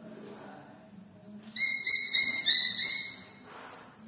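A small trained bird of prey calling: a rapid series of short, clear, high notes, about five a second, lasting about a second and a half from just before the middle. A brief rustle follows near the end.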